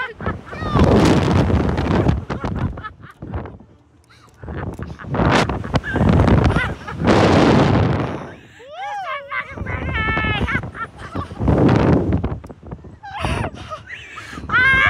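Wind rushing over a ride-mounted camera's microphone in several loud surges as a slingshot ride's capsule swings through the air. High-pitched screaming and laughter from two riders comes in the gaps, with the longest stretch near the end.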